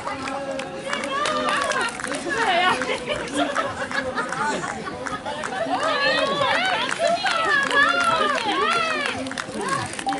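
Several voices overlapping, many of them high-pitched, calling out and cheering on the runners as they come in, loudest in the second half.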